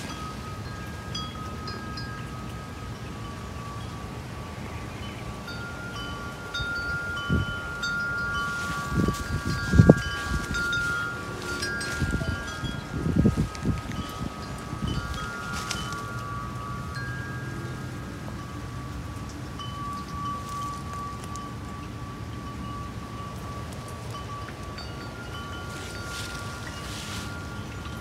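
Wind chimes ringing, several long tones overlapping with scattered higher pings. Wind gusts on the microphone between about seven and fifteen seconds in, loudest about ten seconds in.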